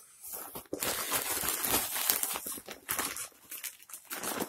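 Packaging crinkling and rustling irregularly as small boxes are pulled out of a shipping package by hand, starting a little under a second in.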